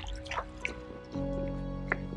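Background music with held chords that change about a second in, over scattered drips and small splashes of water at a concrete water tank.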